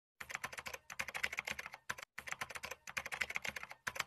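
Keyboard typing sound effect: rapid key clicks in runs broken by brief pauses, timed to text being typed onto the screen.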